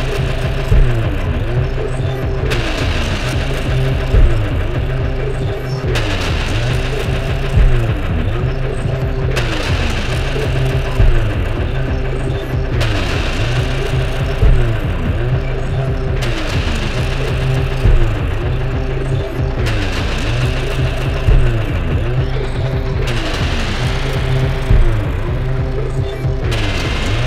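Live electronic music from a modular synthesizer and other electronic instruments: a looping sequence with a low pulsing bass and a short sliding synth figure repeating under a second apart. A loud hit lands about every three and a half seconds, and a brighter layer cuts in and out.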